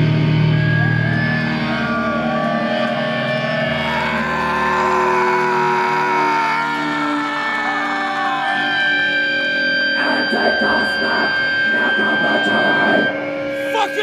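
Live black/death metal band's distorted electric guitars ringing out sustained, feedback-laden notes that bend and slide in pitch, with no steady drumbeat under them. About ten seconds in, a run of irregular hits joins in, and near the end a note glides downward.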